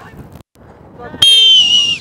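A coach's whistle blown hard in one long, shrill blast of under a second, starting a little over a second in. Its pitch sags slightly towards the end.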